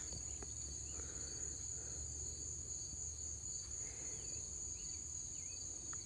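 Outdoor insect chorus: a steady, unbroken high-pitched trilling in two bands, with a low rumble underneath and a few faint short chirps.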